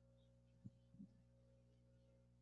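Near silence: a faint steady hum, with two faint short knocks close together about a second in.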